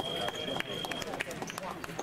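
Fencing scoring apparatus sounding a steady high electronic tone that cuts off about a second in, the signal of a touch registering. Short clicks of footsteps on the piste and voices in the hall run underneath.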